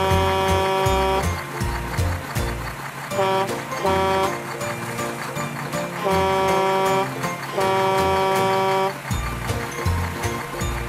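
Background music with a steady beat, over which a truck horn sound effect honks five times at one pitch: one long honk, two short ones, then two more long ones.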